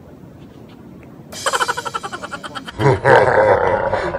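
A man laughing loudly, starting about a second in with quick rapid bursts and getting louder and fuller near the end.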